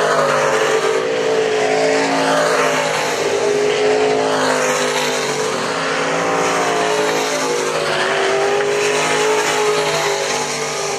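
Sport modified dirt-track race cars' V8 engines running around the oval. Several engines overlap in a steady, loud drone whose pitch rises and falls gently as the cars go by.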